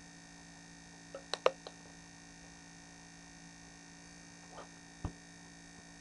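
Faint steady mains hum, with a quick cluster of computer-mouse clicks about a second and a half in and two more single clicks near the end.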